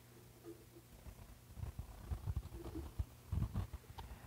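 Faint handling noise from hands working audio cables and plugs: soft, irregular low bumps and rustles.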